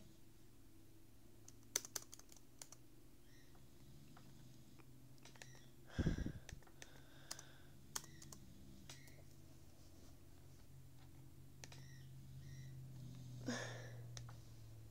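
Faint, scattered clicks and taps on a laptop's keys, not in a steady typing rhythm, over a low steady hum. A louder knock comes about six seconds in.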